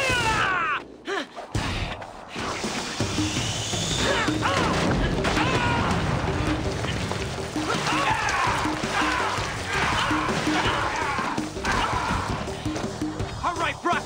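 Synthesized action-scene soundtrack music with a steady pulsing beat, overlaid by repeated swooping electronic sound effects that rise and fall in pitch.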